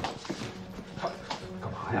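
Quick, irregular footsteps on a hard indoor floor, a handful of short taps. A man's voice cuts in loudly near the end.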